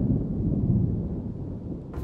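A deep, low rumble in the soundtrack, swelling in loudness through the first half and holding, with drum-heavy music kicking in right at the very end.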